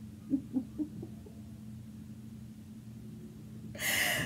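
A few short, stifled laughs about half a second in, over a low steady hum, then a sharp breath in near the end as the laugh breaks out.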